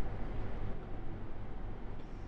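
Steady background hiss with a constant low hum: room tone on the film's soundtrack in a pause between lines.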